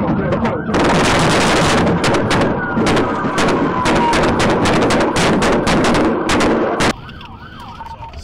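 A long, loud string of gunshots in quick succession, sharp cracks over a constant din, with a police siren wailing under it. It cuts off abruptly about seven seconds in, leaving a quieter siren wail.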